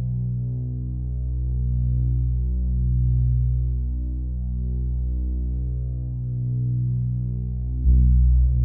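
A deep, steady drone made of low pitched tones that slowly swell and fade with a throbbing pulse. Just before the end it surges suddenly louder in the bass.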